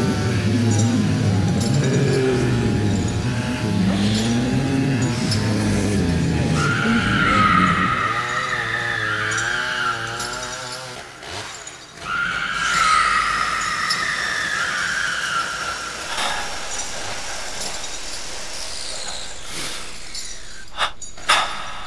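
Horror sound-effects soundscape: a low hum under wavering, moaning tones, with a long high-pitched screech about seven seconds in and another just after halfway.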